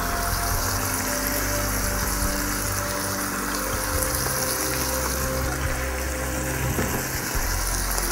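Vegetables sizzling steadily in a frying pan, under background music of long held notes.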